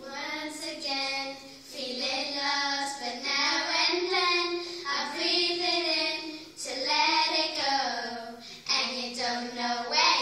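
Three girls of about ten singing a song together into one microphone, in long held phrases.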